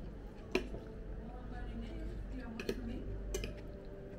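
Knife and fork clicking against a dinner plate while eating, with three sharp clicks: one about half a second in and two near the end, over faint voices.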